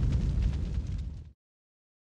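Cinematic boom sound effect of a logo sting, its deep rumble decaying and then cutting off suddenly about a second and a half in.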